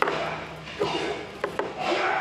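Repeated rubbing or scraping strokes, about three in two seconds, with sharp clicks among them.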